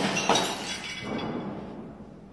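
Glass shattering, with shards clinking and scattering and a couple of further sharp hits as the sound dies away.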